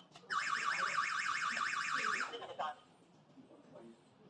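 Alarm system siren sounding a rapid, loud warbling tone for about two seconds, then cutting off: the alarm going off after the motion detector is tripped while the system is armed.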